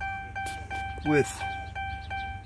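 Car dashboard warning chime sounding continuously as a rapid, steady pulsing tone of about four pulses a second, with the ignition switched to accessory mode.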